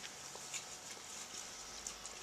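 Person chewing a mouthful of shredded barbecue beef: faint, with a few soft clicks.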